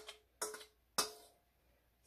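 Two light taps on a stainless steel mixing bowl, about half a second apart, each leaving a short metallic ring, as a spatula scrapes the last of the pumpkin batter out of it.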